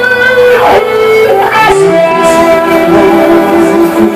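Live band music played loud through a concert sound system: an instrumental passage carried by guitars, with no singing.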